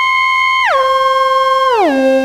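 Digital slide whistle synthesized from a flute physical model and additive whistle synthesis, playing one pure, pitched tone. It holds a high note, slides down an octave about two-thirds of a second in, holds again, then slides down another octave near the end.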